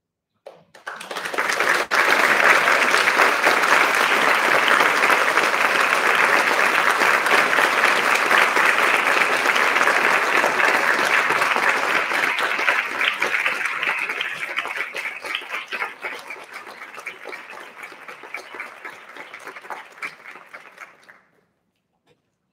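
Audience applauding: the clapping starts suddenly, holds steady and full for about twelve seconds, then thins to scattered claps and dies away just before the end.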